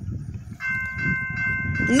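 Railroad grade-crossing warning bell starts ringing about half a second in, a steady metallic ring, as the crossing activates for an approaching train.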